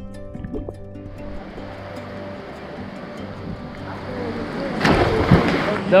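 Background music with sustained tones, over water rushing and splashing that builds and is loudest about five seconds in, as a swimmer surfaces after a cliff jump into a pool.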